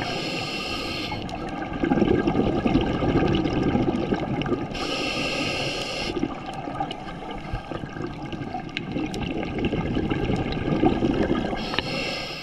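Scuba breathing through a regulator, heard underwater: a hissing inhale at the start and again about five seconds in, each followed by a longer rumble of exhaled bubbles.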